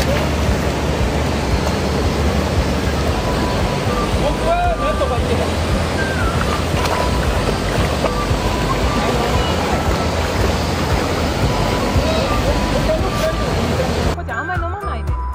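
Steady rush of a shallow river flowing over rocks, with wind buffeting the microphone.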